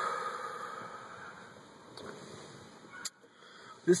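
A long breathy exhale of cigarette smoke after a deep drag, fading away over about two seconds. A short click follows about three seconds in.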